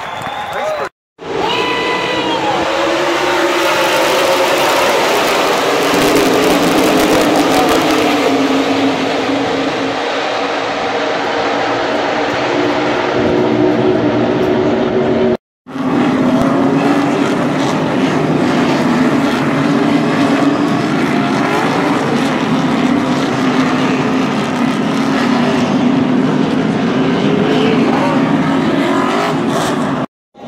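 A pack of NASCAR stock cars racing past at speed, their V8 engines running loud and continuous, with several engine pitches overlapping and shifting. The sound cuts out for an instant twice, about a second in and about halfway through.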